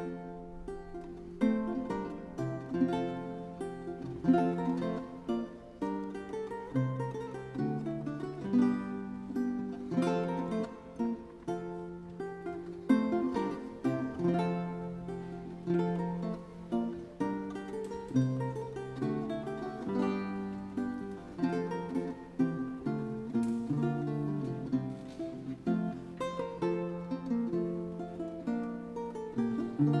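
Renaissance lute played solo, plucking a continuous flowing line of single notes and chords.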